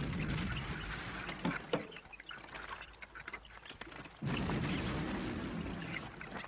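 Film battle soundtrack: two stretches of dense rumbling with sharp crackles, as of explosions and gunfire across water. Each starts suddenly, the first right at the start and the second about four seconds in, with quieter crackling between.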